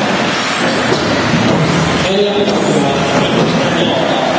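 Several electric 1/10-scale 4WD RC buggies racing on a hard indoor floor, giving a steady mix of motor whine and tyre noise that echoes around the hall. A short rising whine comes a little past halfway as a car accelerates.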